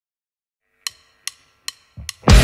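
Drumsticks clicked together as a count-in: three sharp, evenly spaced clicks, about two and a half a second, after a short silence, with a fourth click and a low thump right at the end.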